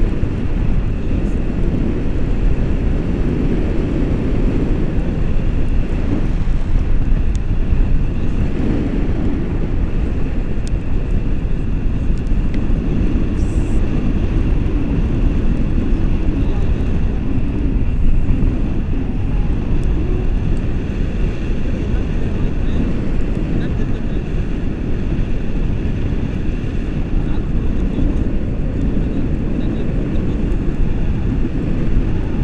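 Steady wind noise on the microphone from the airflow of a tandem paraglider in flight, a loud rumble with no breaks.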